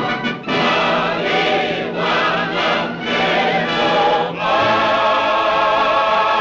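A chorus singing with orchestral accompaniment in a 1930s film musical number. The phrases break off briefly a few times, then settle into a long held chord about two-thirds of the way through.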